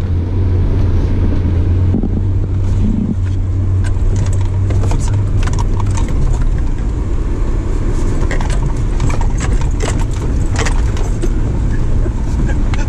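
Engine and tyre noise of a 4x4 heard inside its cabin while it is driven on a rough track, with frequent rattles and clicks from the cabin. A steady low drone fills the first half and gives way about six seconds in to a rougher rumble.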